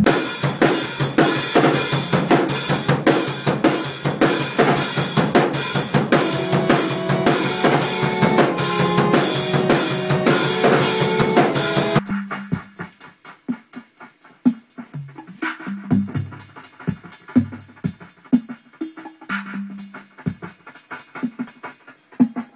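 A rock band playing a dense groove on drum kit, bass guitar and keyboards, which cuts off suddenly about halfway through. Then a sparse programmed beat on a Roland TR-808 drum machine: deep booming kick hits under regular high ticks.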